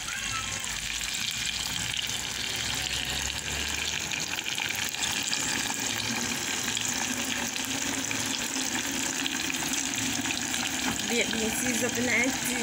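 Saltfish and tomato frying in oil in a pot, a steady sizzle, stirred with a metal spoon.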